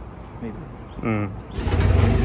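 A man says a word, then about a second and a half in a loud, steady engine comes in abruptly: a rough-terrain forklift's diesel engine idling close by.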